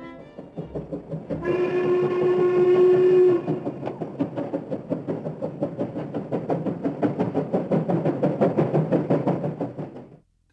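Steam locomotive whistle blowing one held note for about two seconds, starting just over a second in, over the locomotive's rapid, regular exhaust beats, which carry on steadily to the end.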